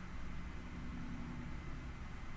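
Steady low hum and hiss of background noise, with no distinct event.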